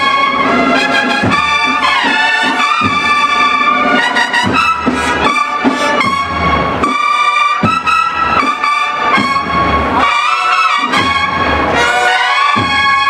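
A live cornet-and-drum band playing a march: the horns sound loud held and moving notes over regular drum strokes.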